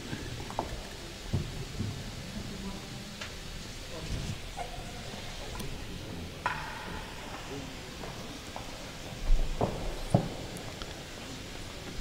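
Quiet court ambience between points: a low steady hiss with faint distant voices and a few soft knocks, the loudest a pair of low thumps near the end.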